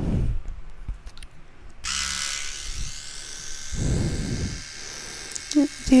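Small battery-powered electric facial-hair trimmer switched on about two seconds in and buzzing steadily. A soft low rumble of handling comes a couple of seconds later.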